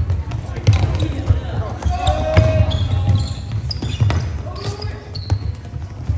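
Floorball play in a sports hall: sharp clacks of sticks on the plastic ball and on each other, repeated thuds of players' feet on the hall floor, and players' calls.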